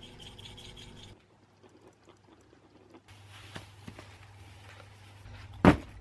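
Faint scraping of metal spoons working a thick paste, with a low steady hum underneath. Near the end comes a single loud sharp thump.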